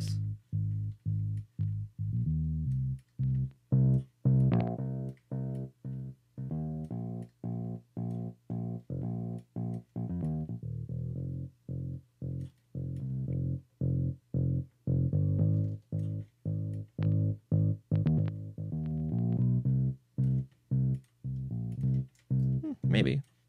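A bass guitar track playing on its own: a staccato disco bass line of short, separate notes, about two a second. It runs through a SansAmp amp-simulator plugin.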